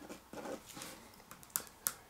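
Faint pen-on-paper sounds as a ballpoint marks a sheet on a desk, with two light, sharp ticks close together about a second and a half in.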